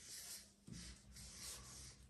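Faint, irregular strokes of a felt-tip marker on paper as a word is written by hand.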